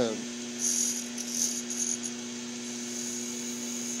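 Wood lathe running with a steady hum while a small wooden whorl spins on it. Short stretches of light, high scraping come from the wood being worked between about half a second and two seconds in.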